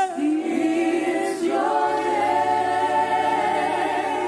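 Gospel choir singing a worship song in harmony, the voices holding long notes; a low accompanying note comes in about two seconds in.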